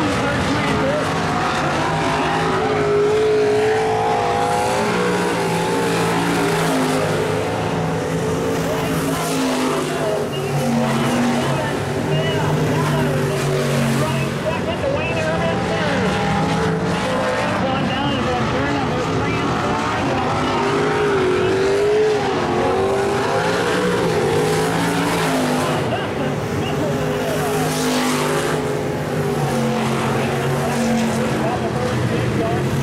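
Several dirt-track stock cars' V8 engines running hard in a race, their pitch rising and falling as the cars accelerate down the straights and lift into the turns, with more than one engine heard at once.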